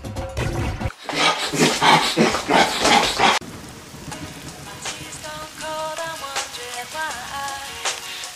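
A loud noisy rush for about two seconds that cuts off suddenly, followed by the patter of rain under slow, soft music of separate sustained notes.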